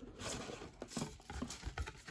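Cardboard collector's box being opened by hand: light taps, scrapes and rustling as the lid comes off and a sheet of tissue paper is lifted from the tray.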